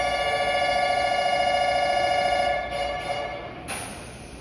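Station platform departure bell ringing, a steady electric ring with a rapid trill that lasts about three seconds and then stops. Near the end comes a short hiss of air.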